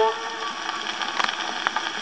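The last sung note from a Columbia Type Q Graphophone's wax cylinder cuts off just after the start, leaving the cylinder's surface hiss through the horn with a few sharp crackles about a second in and again near the end.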